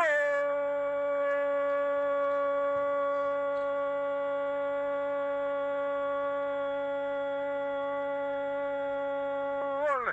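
A male football radio commentator's drawn-out goal cry, a single "gooool" held at one steady pitch for nearly ten seconds and breaking off just before the end, called for a penalty kick that has gone in.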